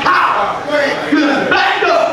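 Loud, excited shouting: a preacher and his congregation calling out together.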